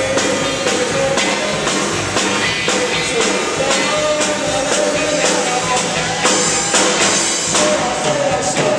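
Live rock band playing: a man singing through a microphone over electric guitar and a drum kit keeping a steady beat.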